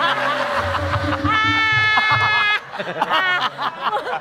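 Studio audience and guests laughing over a held, steady musical tone that lasts about two and a half seconds and cuts off suddenly just past halfway; choppy laughter continues after it.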